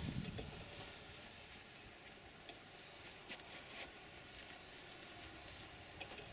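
Faint, steady hum of a distant octocopter's electric motors and propellers, with a few faint ticks.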